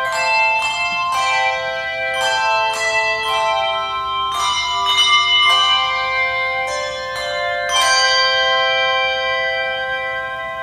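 Handbell choir playing a slow piece: chords of struck brass handbells that ring on and overlap, a fresh chord every second or so. A fuller chord struck about eight seconds in is left to ring.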